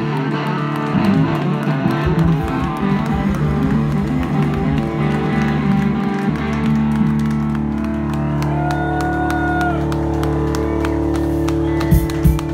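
Live rock band with electric guitar and bass guitar: the guitar plays a busy run of notes, then lets a chord ring out from about halfway through, with drum hits near the end.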